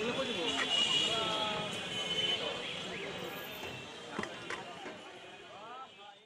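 Street-side ambience of people's voices talking around a food cart over steady traffic noise, with a few sharp clicks about four seconds in; the whole sound gradually fades out toward the end.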